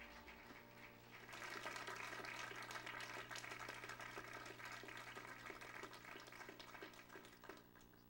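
Quiet applause from a congregation: many hands clapping, starting about a second in and fading away near the end.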